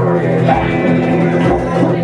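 Live tribal-trance band music: layered melodic parts over a steady low drone.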